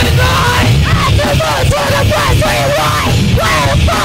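A loud live rock band playing, with heavy low end from bass and drums, and a yelled vocal line that slides up and down in pitch over it.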